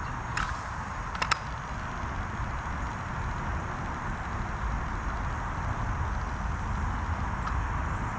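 Steady outdoor background noise, a low rumble under a hiss, with a few sharp clicks in the first second and a half.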